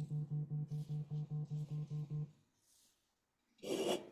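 A single low pitched note repeated rapidly, about six pulses a second, stopping abruptly a little over two seconds in. Near the end comes a short, loud burst of noise on the microphone.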